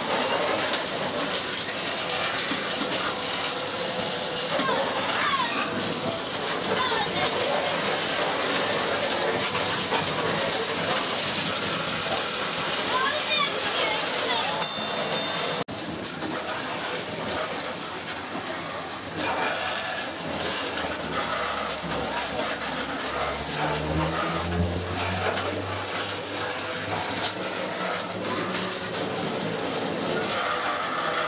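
Water cannons on a pirate-ship water-shooting game spraying steadily, a continuous gush of water jets, with fairground voices behind. The sound breaks off abruptly about halfway through and carries on, and a low hum comes in for a few seconds after about twenty seconds.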